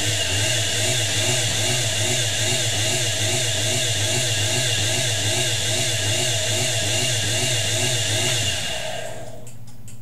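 Homemade electric motor-generator rig running: a steady electric-motor hum and whine with a regular warble about two or three times a second, then winding down and stopping near the end.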